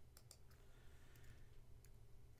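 Faint computer keyboard keystrokes, a handful of separate light clicks spread over the two seconds, over a low steady background hum.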